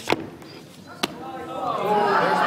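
Two sharp knocks about a second apart from items handled at a lectern, then many voices chattering, growing louder near the end.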